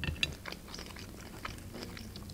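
Close-miked chewing of fried pelmeni dumplings: faint, scattered small mouth clicks.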